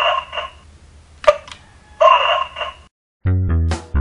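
Bandai DX Signaizer toy: a sharp button click, then a short buzzy electronic sound from its small speaker, heard twice. About three seconds in, music with a plucked bass line starts.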